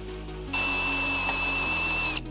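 Cordless drill with a spot-weld cutter bit drilling into a spot weld in a car's sheet-steel roof skin. The motor whines faintly at first. About half a second in, the bit bites and cuts with a steady, high-pitched squeal over a grinding hiss. It is cutting through the top layer of the roof skin.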